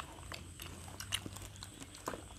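People eating at a table: faint chewing with scattered small clicks of skewers and utensils on plates.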